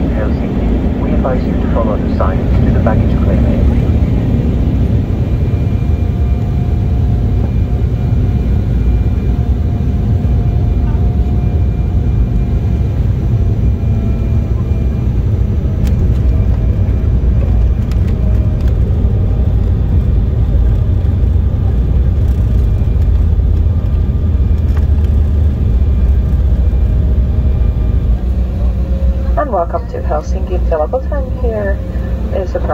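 Steady low rumble of engine and airflow noise heard inside the cabin of an Embraer E190 airliner during landing and the rollout down the runway.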